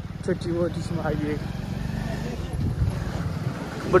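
Motorcycle running at low road speed, heard from the saddle as a steady low rumble.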